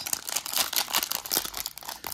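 Foil trading-card pack wrapper crinkling as it is torn open by hand: a rapid, continuous run of crackles.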